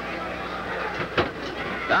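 Wrestling arena crowd noise over a steady low hum, with one sharp thud about a second in: a wrestler's flying knee landing in the ring corner.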